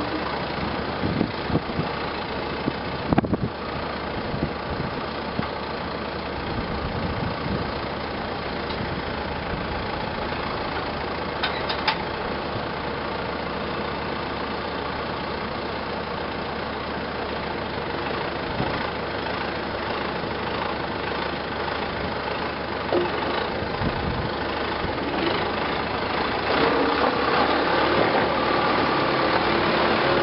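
Farm machinery engine running steadily at idle, with a few sharp knocks in the first few seconds; the engine grows louder near the end.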